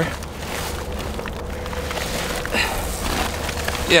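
Steady low wind rumble on the microphone, with faint rustling and handling of a woven plastic bag holding a catfish.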